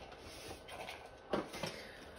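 Quiet room with faint handling noises: light clicks and knocks, with one short, louder sound a little past halfway.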